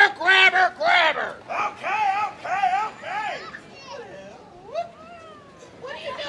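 A high-pitched voice chanting or singing short, pitch-bending syllables about twice a second, followed by a few softer gliding, whistle-like tones.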